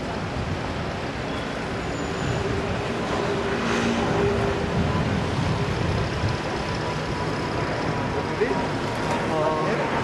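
Steady outdoor city background: road traffic noise with faint, indistinct voices.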